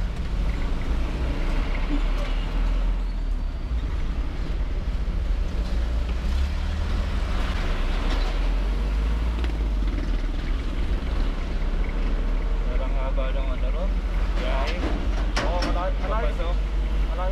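Steady low rumble of a road vehicle on the move, with a person's voice talking briefly near the end.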